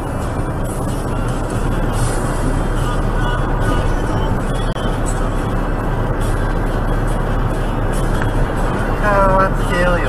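Steady road and engine noise inside a moving vehicle's cabin, picked up by a dashcam microphone while cruising on an expressway, with a constant low hum underneath.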